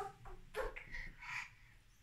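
A toddler's faint, short vocal sounds: a few brief squeaky utterances in the first second and a half, then quiet.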